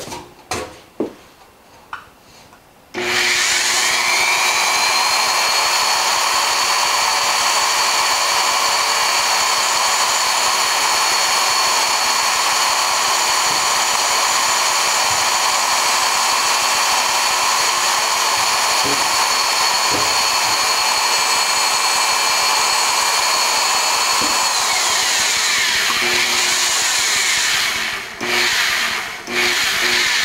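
Powered bead roller's electric motor starting about three seconds in with a rising whine, running steadily while a sheet-metal panel feeds through the rolls, then winding down with a falling whine a few seconds before the end. A few sharp metal knocks from handling the sheet come before it starts and after it stops.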